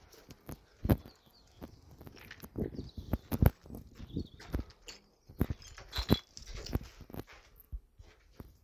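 Footsteps on a concrete floor scattered with brick rubble and debris, a knock or scrape about every half second at a walking pace, with a few faint high chirps in between.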